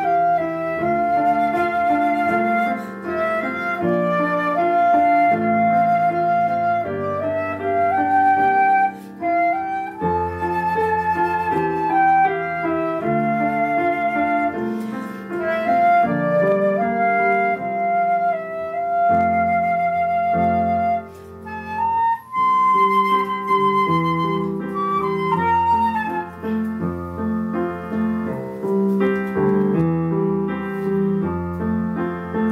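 Silver concert flute playing the melody of a Korean gospel song over a piano accompaniment. Near the end the flute drops out and the piano carries on alone.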